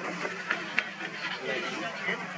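Indistinct background chatter of voices over a low steady hum, with a couple of sharp ticks about half a second and just under a second in.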